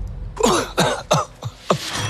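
A man clearing his throat before speaking: a run of about five short vocal sounds, each dropping in pitch.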